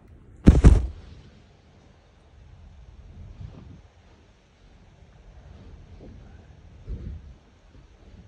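Handling noise from the recording camera being moved: a loud, short knock about half a second in, then faint rustling and a smaller thump about a second before the end.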